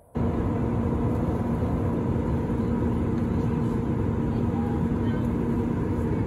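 Jet airliner cabin noise in flight: the steady roar of the underwing turbofan engines and airflow, with a steady low hum under it. It cuts in abruptly just after the start.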